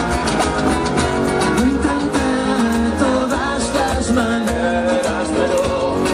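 Live band playing Andean-rooted rock: strummed guitars over a steady cajón and cymbal beat, with a sung melody on top.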